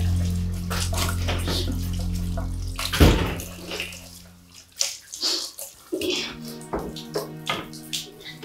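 Water running from a kitchen tap into a sink while dishes are washed, with a sharp knock about three seconds in and scattered clinks of crockery after it. Background music plays underneath, with a steady low drone at first and sustained tones near the end.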